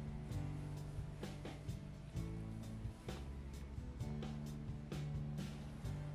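Instrumental background music with sustained low notes and a short, sharp tick every so often.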